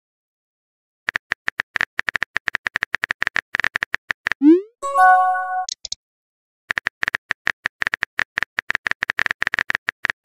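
Texting-app sound effects: a rapid run of keyboard-tap clicks for about three seconds, then a short rising swoop as a message sends and a brief chime. After a pause, a second run of typing clicks starts and carries on.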